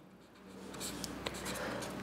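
Pen writing on paper: a faint scratching of pen strokes that starts about half a second in.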